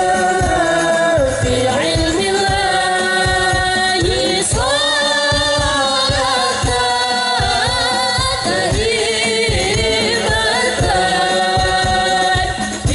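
A woman singing a devotional song into a microphone, drawing out long, gliding notes over a steady low beat.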